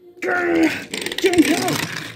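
A person's voice making strained groaning sounds, the effort noises of pulling at something, with a held groan just after the start and shorter ones after.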